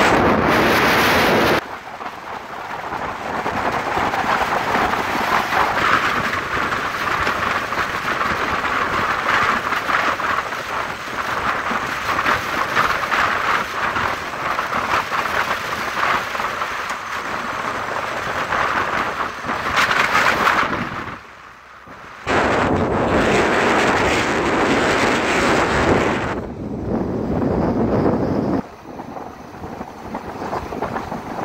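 Wind buffeting the microphone of a camera on a vehicle moving at road speed, a loud rushing that surges and drops away abruptly, with a brief lull about twenty-one seconds in. Vehicle and road noise run beneath it.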